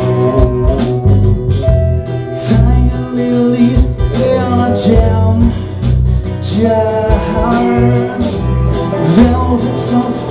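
A live alt-country rock band playing loudly: electric and acoustic guitars, bass and a drum kit with cymbal strikes.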